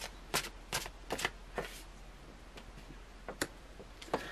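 A deck of tarot cards being shuffled in the hands: a run of crisp card snaps about every half second for the first two seconds, then two more near the end.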